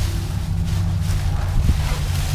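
A plastic trash bag rustling and crinkling as it is handled, over a steady low rumble.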